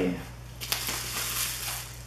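Plastic bubble wrap crinkling and rustling as a wrapped camera body is pulled out of a cardboard box, with a sharper crackle a little under a second in.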